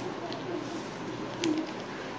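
A dove cooing in the background, low soft calls about half a second and a second and a half in. Over it, a sheet of origami paper is creased and handled, with a couple of sharp paper crackles, the louder one about a second and a half in.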